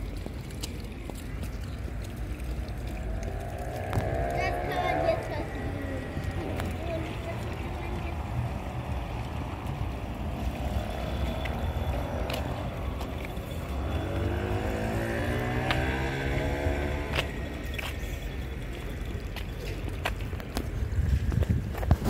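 Outdoor town ambience: a low rumble throughout with faint voices, and two vehicles passing, about four seconds in and again around fifteen seconds.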